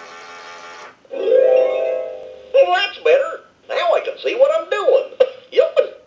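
Animated Goofy lamp's built-in speaker playing its switch-on sounds: two held musical tones, the second slightly falling, then about a second later Goofy's recorded cartoon voice saying one of its phrases, showing that the repaired lamp's sound circuit works.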